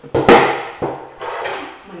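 A thin wooden board dropped flat onto a tiled floor: two loud slapping knocks in quick succession, then a smaller knock a little under a second in.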